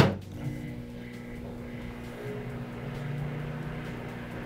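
Microwave oven starting with a sharp click, then running with a steady electrical hum that swells slightly toward the end.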